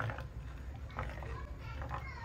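Wooden spatula stirring a thin chili and rice-flour liquid in a non-stick pot: faint soft scraping and sloshing with a couple of light taps, over a low steady hum.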